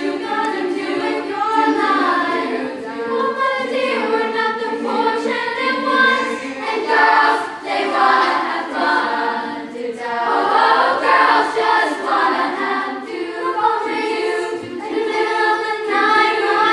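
A girls' choir singing.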